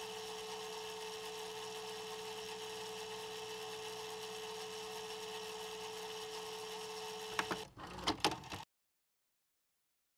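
A steady hiss with a held mid-pitched hum. About seven and a half seconds in it breaks into a few crackles and clicks, then cuts off abruptly.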